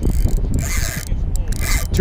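Spinning reel being worked while a hooked striped bass is fought, giving a mechanical scraping and rubbing over a steady low rumble.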